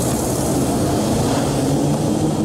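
An SUV driving hard at speed on a highway: a steady engine note under a dense hiss of road and tyre noise.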